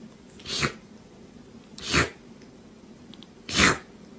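A kitten sneezing three times, each a short sharp burst, with the last the loudest.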